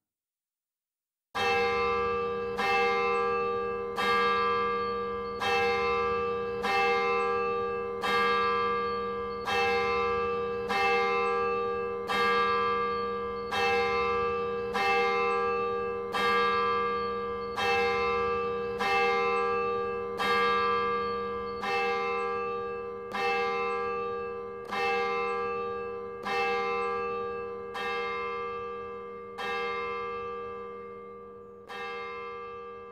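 A single church bell tolling slowly and evenly, about one stroke every second and a third, each stroke ringing on into the next; it begins about a second and a half in. A funeral toll.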